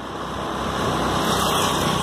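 Engine and rushing road noise of a moving vehicle, growing gradually louder as it picks up speed.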